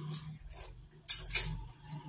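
Close-miked wet chewing and lip-smacking of a person eating Afang soup with meat by hand, with two sharper smacks about a second in. A steady low hum runs underneath.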